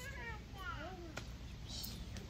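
A young child's brief high-pitched vocal sounds, two short cries early on, one rising and then falling in pitch, and a short squeak near the end, heard faintly over a low room hum.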